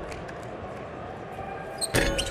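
Basketball arena's hall ambience, a steady low hum with no crowd noise, broken near the end by one short sharp knock.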